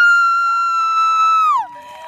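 A long, high-pitched scream of joy held on one pitch for about two seconds, falling away near the end, with a second, lower cry joining partway through, as a winning team celebrates.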